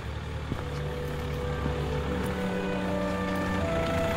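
A car driving slowly toward the microphone along a cobbled street, its tyre and engine noise growing gradually louder, with background music laid over it.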